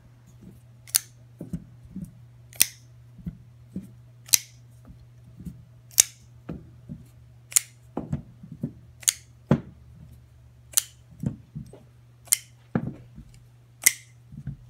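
Hinderer flipper folding knives flipped open one after another, each blade snapping out past the detent and locking with a sharp click about every second and a half, all flipping cleanly. Softer knocks come as each open knife is set down on the cloth-covered table, over a steady low hum.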